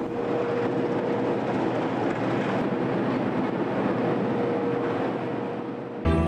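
Steady machinery noise aboard a drillship, an even rumble with a faint steady hum that comes and goes.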